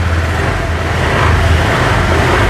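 A motor scooter's engine idling with a steady low hum, a rushing noise swelling and fading over it in the middle.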